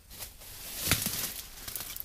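Dry oak brush rustling as it is handled, with a sharp snap of a twig about a second in.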